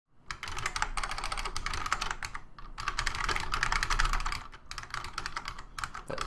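Typing on a computer keyboard: a fast run of keystrokes with a few brief pauses.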